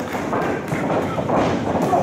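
Wrestlers' feet thudding on the ring canvas as they move and run, over the chatter and shouts of a small crowd.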